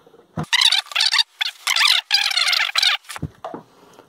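Plastic on plastic squeaking and scraping in several broken high-pitched squeals as the inner container is pulled out of a small plastic car cooler.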